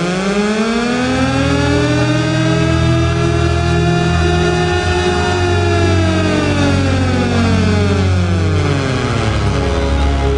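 Intro music: low held notes under a single pitched tone that rises slowly for about five seconds, then falls again by the end, like a siren's wail.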